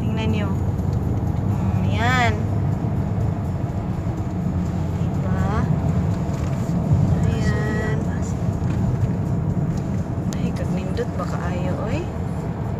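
Steady low road and engine noise inside a moving car's cabin, with a few short wordless vocal sounds, one a sliding exclamation about two seconds in.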